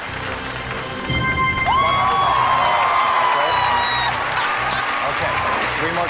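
Studio audience applauding and cheering as a briefcase is opened on a game show, swelling about a second in, with whoops over background music.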